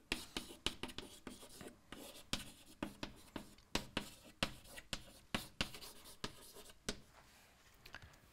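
Chalk writing on a blackboard: a quick, irregular run of taps and short scratches as words are written, stopping about a second before the end.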